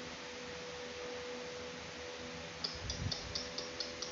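A faint steady hum over room hiss. In the second half comes a quick run of short, high, sharp ticks, about five a second, with a soft low thud among them.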